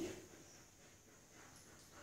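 Near silence: faint room tone after the fading end of a woman's spoken word.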